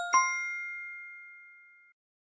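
Correct-answer chime sound effect: two quick bell-like dings, the second higher, ringing and fading away over nearly two seconds as the right answer is revealed.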